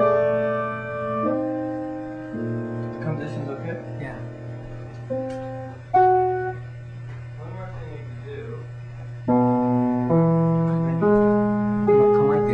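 Slow, sparse piano: single notes and chords struck about once a second and left to ring out and fade, with a quieter gap in the middle before the playing resumes around two-thirds of the way through.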